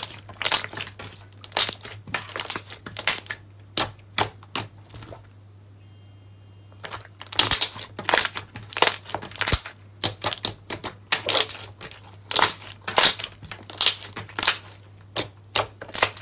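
Thick green slime squeezed, pressed and folded by hand, giving irregular clusters of sharp crackling pops and clicks, with a pause of about two seconds midway.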